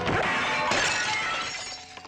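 A large glass mirror smashing, with a crash at the start and a second burst of breaking glass under a second later, then fading as the pieces settle, over music.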